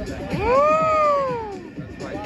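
One loud, drawn-out call lasting over a second, rising and then falling in pitch, over electronic dance music with a steady kick drum about twice a second.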